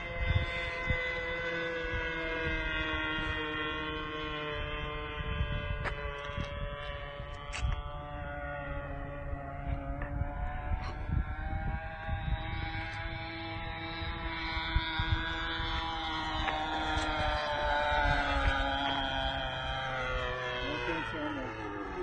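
O.S. Max .50 two-stroke glow engine of a radio-controlled Extra 300S model plane in flight: a steady buzzing drone whose pitch slowly falls and rises several times as the plane flies its passes, over a low rumble.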